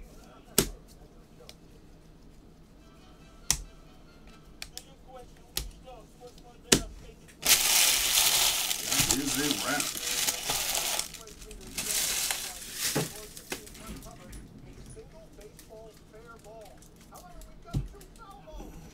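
A few sharp clicks and knocks from handling things on the table, then about three and a half seconds of loud crinkling and another second of it shortly after: foil card-pack wrappers and packaging being crumpled.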